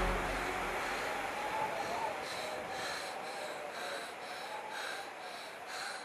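Quick, heavy panting, about two breaths a second, wheezy and hoarse, starting about two seconds in as the tail of a music cue fades away.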